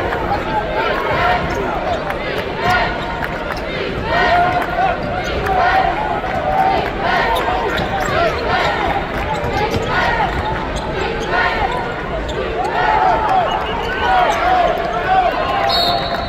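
A basketball being dribbled on a hardwood court during live play, over a steady background of crowd voices in a large arena.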